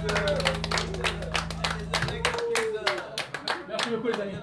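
Audience clapping and calling out at the end of a song, over a low steady hum from the stage that cuts off about two and a half seconds in.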